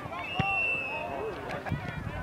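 Several voices shouting across a soccer field, with one steady, high-pitched referee's whistle blast about a second long near the start. A sharp knock comes just as the whistle begins.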